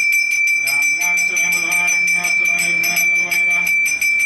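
A temple bell rung rapidly and without pause, about six strikes a second, its high ringing tone held steady, over a man's voice chanting in long held notes during the abhishekam.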